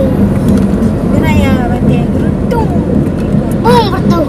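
Steady low rumble of a vehicle driving on the road, with a voice speaking briefly about a second in and again near the end.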